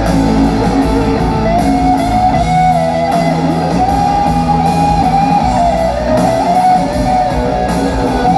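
Live rock band playing an instrumental passage: an electric guitar lead holds and bends sustained notes over bass guitar and drums.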